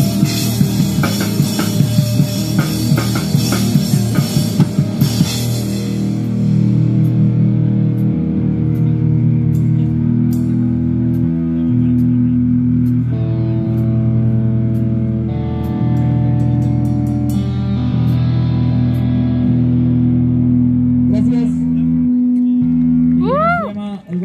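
A hardcore punk band playing live on guitar, bass and drums. For the first five seconds the drums and cymbals pound along with the guitars, then the drums stop and the guitars and bass hold long sustained chords, changing every few seconds, until the song ends near the end.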